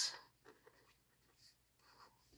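Faint pen writing on planner paper, a few light scratches and ticks of the pen tip.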